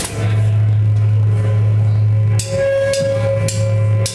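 Live rock band, electric guitar letting a low note ring through the amplifier, with the drummer's cymbals. It is struck again with a cymbal crash a little over two seconds in.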